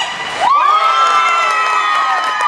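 Spectators cheering and shouting at a goal in a youth ice hockey game. About half a second in, a long, high, held shout rises out of the crowd.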